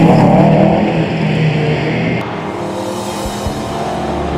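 Aston Martin Vantage race car engine accelerating away for about two seconds, then a sudden change to background music at a lower level.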